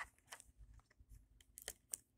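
Faint, scattered crinkling and small ticks of a plastic-wrapped Mini Brands capsule being handled as it is worked open.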